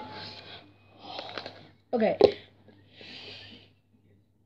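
A person breathing out heavily three times, with a spoken "okay" and a sharp click about two seconds in.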